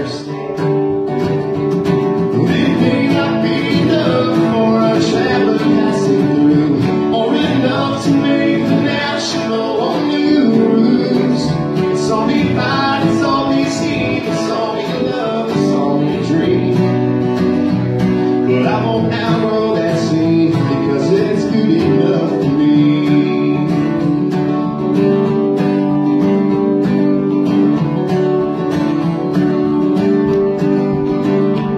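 Live acoustic country music: two acoustic guitars and a mandolin playing a steady strummed song.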